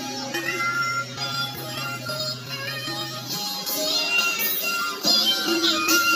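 A song playing: a sung melody over instrumental backing.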